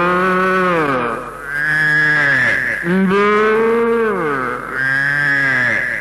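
A man singing four long, drawn-out notes in an Indian melodic style, each bending and sliding down in pitch at its end.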